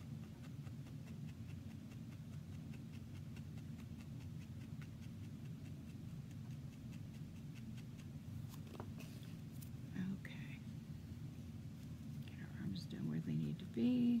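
A barbed felting needle stabbing again and again into wool on a foam pad: a run of rapid, faint ticks. Near the end come a few louder, soft sounds.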